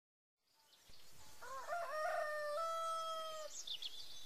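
A rooster crowing once: a short broken start that settles into one long held note, beginning about a second and a half in and ending shortly before the end. A few faint high chirps follow.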